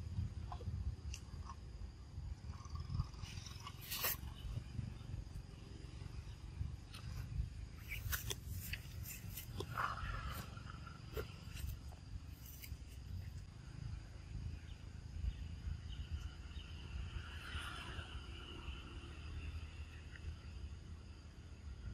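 A steady low rumble with a few sharp clicks, and short faint calls from the monkeys about halfway through and again near the end.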